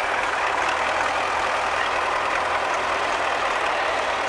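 Diesel engines of MTZ-80 tractors running steadily, one of them working its front loader to lift a round hay bale.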